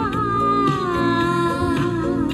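A woman singing a Mandarin pop ballad into a handheld microphone, holding one long note that drifts slightly downward, over a recorded backing track.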